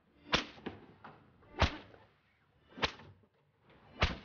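A whip lashing a prisoner in a steady rhythm: three strokes about a second and a quarter apart, each a short swish ending in a sharp crack, with a fourth coming at the very end.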